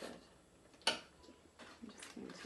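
A table knife clinks once, sharply, against a crockery plate about a second in as softened butter is cut into chunks. A few faint soft knocks of kitchen handling follow.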